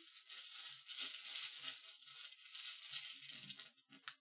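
Rune pieces rattled together, shaken continuously for a draw, stopping just before the end.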